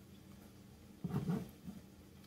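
Quiet room tone, broken about a second in by one short, low voice-like sound, then a smaller blip.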